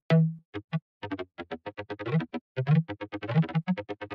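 Short, clicky synth bass notes from a Serum preset, a few single notes at first and then a quick run of them at changing pitches from about a second in, as a bass melody is put together.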